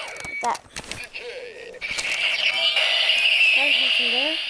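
Kamen Rider Decade DX henshin belt (Decadriver) toy playing its electronic transformation sound effect through its small speaker after the Decade card is slotted in. A few plastic clicks from the buckle come first, then a loud steady electronic tone starts about two seconds in.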